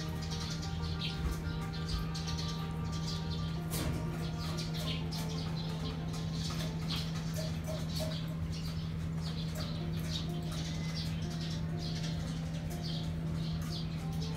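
Birds chirping in rapid, high little peeps throughout, over a steady low hum and background music.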